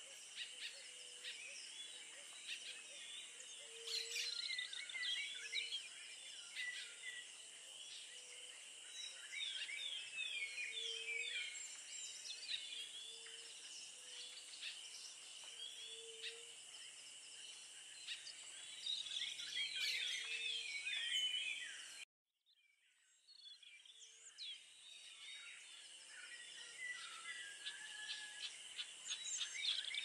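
A chorus of small birds chirping and twittering, over a steady high drone and a short low note repeating every second or so. The sound cuts out abruptly about 22 seconds in, then fades back in.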